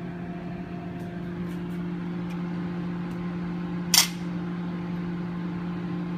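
A steady low electrical hum from a running kitchen appliance, with a short scrape just before four seconds in as a spoon digs ice cream out of a plastic tub.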